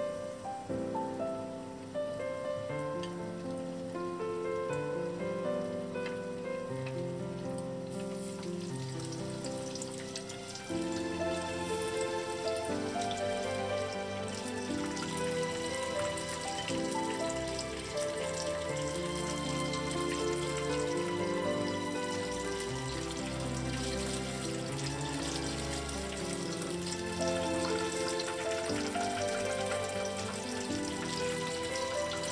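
Background music throughout. About a quarter of the way in, the crackling sizzle of potato-starch-coated mackerel pieces frying in 170 °C oil in a shallow pan comes in under it and grows denser.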